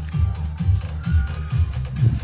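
Bass-heavy music played through a distant outdoor sound system, heard mainly as a steady beat of deep bass notes carrying across open ground, with the higher parts of the music faint. The speaker boxes are placed face down.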